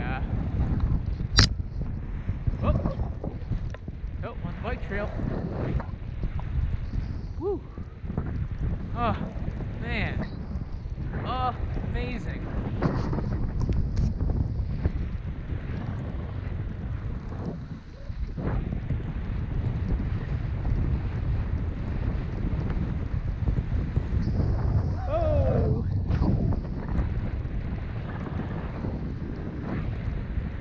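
Wind rushing over the microphone while skiing downhill, with skis sliding over fresh snow. A sharp knock about a second in, and a few short voice exclamations.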